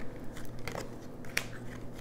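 Tarot cards being handled by hand: light rustling with two sharp clicks about a second apart as cards are picked up and slid from the deck.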